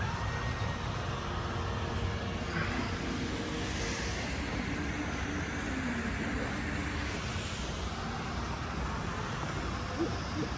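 Steady outdoor urban background noise, a continuous hum like distant traffic.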